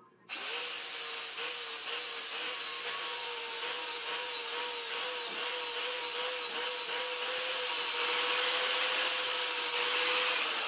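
Handheld angle grinder grinding a steel seax blade made from an old farrier's rasp. It starts abruptly just after the beginning, then runs as a steady motor whine under a high, hissing grind.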